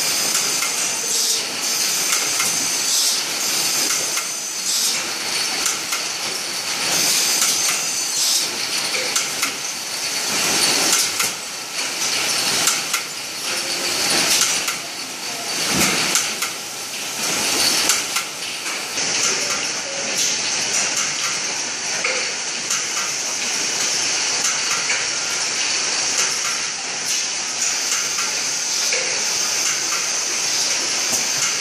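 Automatic bottle-packing machine running: pusher arms and chain conveyors clatter with repeated sharp knocks over a steady hiss. About two-thirds of the way in, the knocks thin out and the hiss is left more even.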